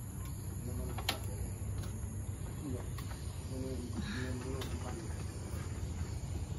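Steady high-pitched insect chirring, a cricket-like chorus, with faint distant voices and a few light clicks.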